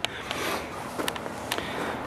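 Faint, steady outdoor background noise with a few soft ticks.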